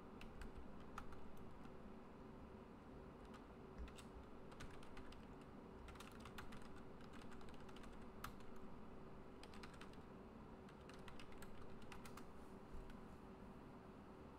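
Faint computer keyboard typing, with keystrokes coming in scattered clusters.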